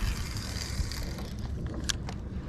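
Wind buffeting the microphone in an uneven low rumble, with a light hiss of open water around a kayak, and one sharp click near the end.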